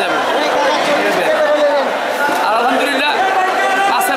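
Only speech: a man talking over the overlapping chatter of a crowded indoor market hall.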